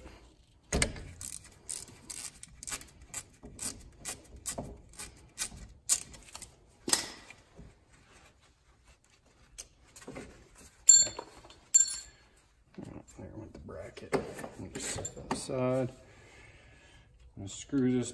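Small metal hand-tool work on ATV front suspension hardware: a run of irregular sharp clicks and light scrapes over the first several seconds, then two bright, ringing metallic clinks about a second apart, the loudest sounds here.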